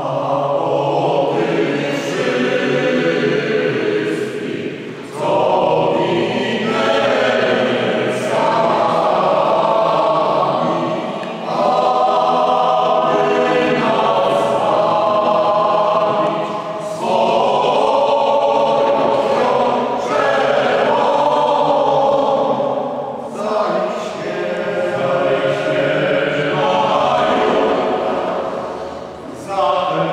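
Mixed choir of men's and women's voices singing a slow piece in a church, in sustained chordal phrases of about five or six seconds with brief breaths between them.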